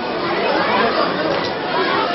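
Crowd chatter: many voices talking over one another in a steady babble, with no single speaker standing out.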